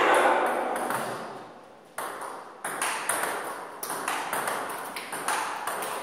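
Table tennis multiball drill: the celluloid-type ball clicks sharply off the bats and the table in quick succession, about two or three hits a second, as backspin balls are fed and returned with backhand topspin. The tail of a louder sound dies away before the clicking starts, about two seconds in.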